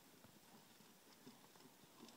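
Faint, soft hoofbeats of a horse loping over loose arena dirt toward the camera.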